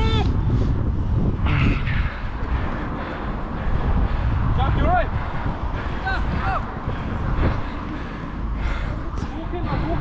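Distant male voices shouting short calls across the pitch a few times, over a steady low rumble of wind and movement on a body-worn microphone.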